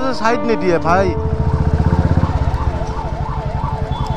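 Ambulance siren wailing, its pitch wavering up and down about twice a second, over the steady beat of a motorcycle engine. A few quick rising-and-falling sweeps fill the first second.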